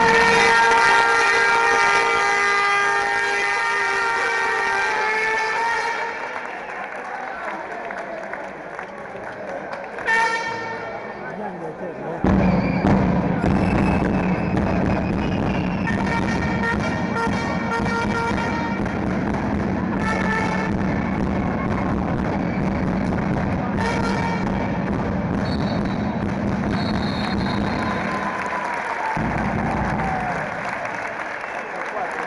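Fans' air horns and crowd noise in a sports hall: several horns hold long blasts at the start, then the crowd din jumps up suddenly about twelve seconds in and stays loud, with short horn blasts over it every few seconds.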